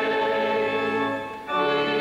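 Voices singing a hymn in long, held notes, with a short break between phrases about a second and a half in.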